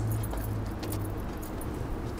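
Keys jingling in light, scattered clicks over a steady low hum.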